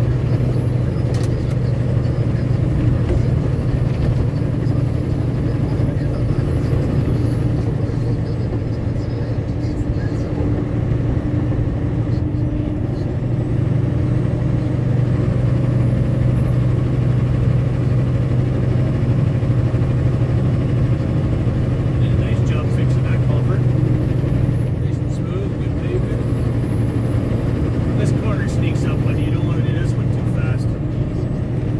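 Truck engine and tyre noise heard from inside the cab while cruising at steady speed: an even, unchanging hum.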